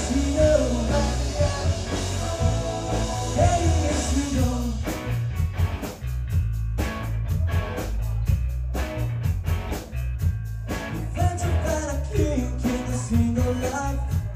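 Live rock band playing: electric guitars, bass and drum kit. In the middle of the passage the band plays short, evenly spaced chord stabs with gaps between them, with sustained, bending guitar lines before and after.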